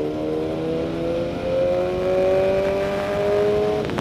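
Sport motorcycle engine pulling steadily under throttle, its note rising slowly as the bike speeds up, with a brief break in the note near the end like a gear change. Wind rush runs underneath.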